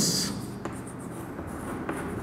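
Chalk writing on a chalkboard: light scratching of the chalk stick across the board, with a soft tap about half a second in and another near the end.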